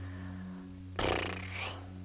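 A short breath, about a second in, lasting under a second, over a steady low hum.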